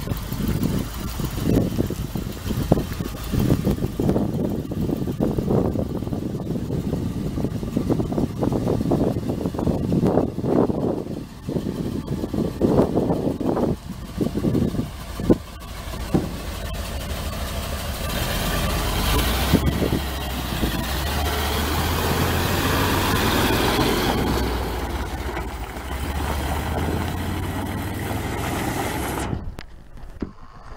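International 446 V8 engine of a 1981 International F1924 grain truck running, with uneven rumbling in the first half. From about halfway the engine sound becomes steadier and grows louder as the truck drives off.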